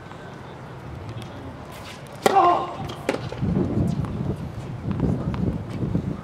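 A tennis ball struck hard by a racket about two seconds in, a single sharp crack with a short ring after it, followed by a few lighter knocks of the ball and low murmuring voices.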